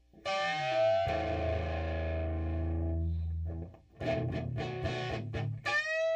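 Electric guitar through distortion. A chord is struck with a downward slide and rings for about three seconds, followed by a run of short choppy strums, and near the end a note bent upward and held.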